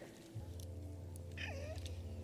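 War-drama soundtrack: a low, steady musical drone comes in about half a second in, and short rising-and-falling cries sound over it from midway on.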